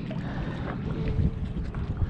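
Wind buffeting the microphone in a low, steady rumble, with water sloshing around someone wading.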